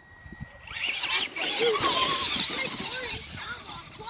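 Traxxas radio-controlled monster truck accelerating away over muddy ground, its motor and tyres churning the dirt; the sound builds about a second in and fades as the truck draws away near the end.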